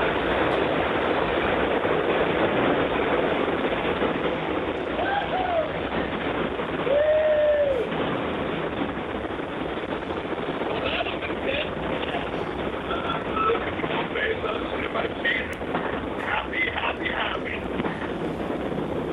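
Steady hiss of the open audio feed from the New Shepard crew capsule, with faint crew voices. There are two short exclamations about five and seven seconds in, and scattered chatter in the second half.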